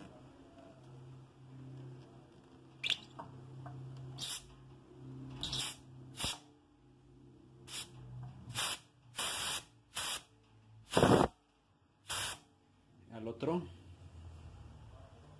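Pressurised CO2 hissing out of a Cornelius keg post in about ten short bursts as a stick presses the new poppet open, the loudest about 11 seconds in. Each burst stops sharply when the poppet is released and reseals.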